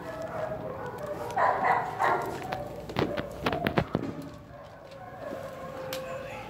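A dog barking: a loud burst about a second and a half in, then a quick run of short, sharp sounds around three to four seconds in.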